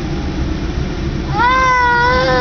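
A young child's long, high whining cry, beginning about one and a half seconds in, over the steady low rumble of the car cabin.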